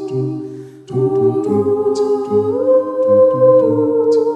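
Mixed a cappella vocal ensemble singing held chords over a bass voice pulsing a rhythmic line. The sound dips briefly just before a second in, then a new chord comes in and steps up in pitch about halfway through.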